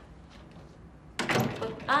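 A wooden room door opening with a sudden clatter a little over a second in, followed by a brief spoken "Ah".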